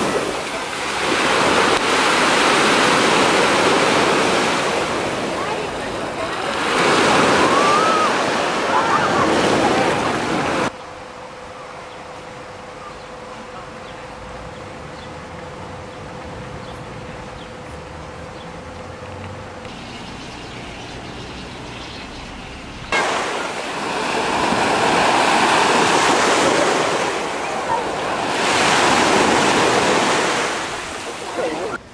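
Small sea waves breaking and washing up a sandy shore, the surf rising and falling in swells. Partway through it cuts suddenly to a much quieter stretch of beach ambience with a faint steady hum, then the surf sound returns about two-thirds of the way in.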